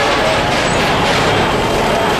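Steady, loud road traffic noise with no distinct events.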